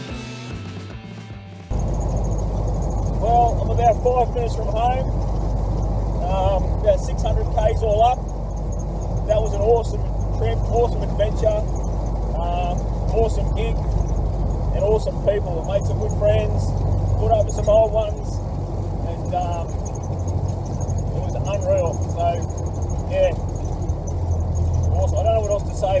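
The end of rock music fades out, then cuts to the steady drone of an old Ford four-cylinder engine and road noise heard from inside the car's cabin while it drives. Short wavering higher-pitched sounds come and go over the drone.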